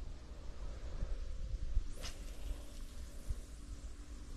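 Wind rumbling on the microphone, with one brief swish about halfway through as a feeder fishing rod is cast.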